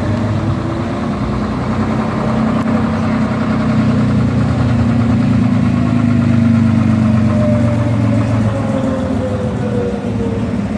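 Diesel engine of a vintage half-cab double-decker bus running as the bus pulls slowly past close by. The drone is loudest a little past the middle, and a fainter whine falls slowly in pitch.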